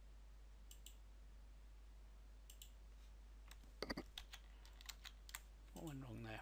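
Faint clicks of a computer mouse, in pairs about a second and two and a half seconds in, then a quicker run of clicks around four to five seconds in, over a low steady hum.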